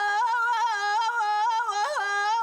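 A woman singing unaccompanied in the Amazigh (Berber) style of the Middle Atlas, holding one long high note with a slight waver and bending it briefly near the end.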